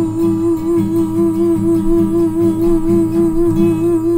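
A woman's voice holding one long wordless note with a steady vibrato over strummed acoustic guitar, as the closing note of a blues song.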